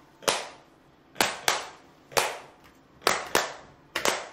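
Hand claps: about six single sharp claps at uneven spacing, some in quick pairs, each with a short ring in a small room.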